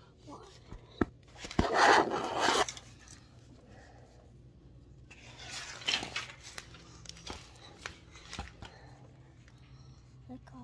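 Handling noise: rustling and rubbing as toys and the phone are moved around, in two loud noisy stretches about two and six seconds in, with a few sharp clicks.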